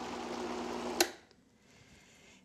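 Countertop blender motor running steadily while pureeing thick potato soup, then switched off about a second in with a sharp click, after which it falls nearly silent.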